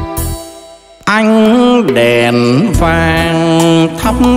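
Live band music in an instrumental break with no singing: the accompaniment drops away briefly near the start, then about a second in a solo melody line with gliding pitch bends and vibrato comes in over the band.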